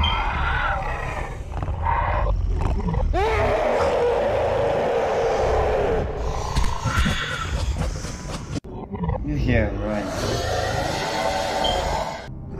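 A cartoon monster's roaring, screaming voice over a steady low rumble, with one long held cry in the middle.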